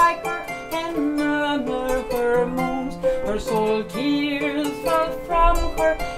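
A woman's voice singing slow, held melodic lines over a kora, the West African harp-lute, whose plucked strings ring out in a running accompaniment.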